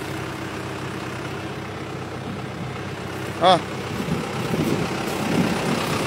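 Farm tractor's diesel engine running steadily, getting a little louder after about four seconds.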